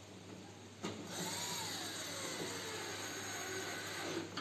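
Cordless drill running for about three seconds as it turns a screw in the top of a washing machine cabinet, starting with a click; its motor pitch rises briefly and then falls as the load changes.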